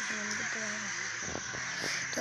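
Indistinct voices over a steady high-pitched hiss.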